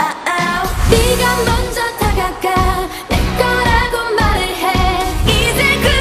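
Live K-pop performance: a girl group singing over a dance-pop backing track with a heavy bass beat.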